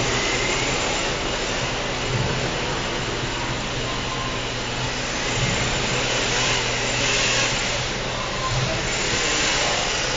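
Radio-controlled rear-wheel-drive drift cars running in tandem: the whine of their electric motors rises and falls over a steady hiss of tyres sliding on the smooth floor, swelling a little as the pair comes closer near the end.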